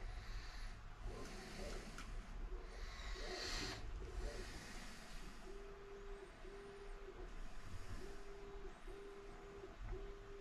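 Soft handling sounds as an RC rock crawler is set down on corner-weight scale pads on a workbench. In the second half comes a series of short, steady low tones, each about half a second long.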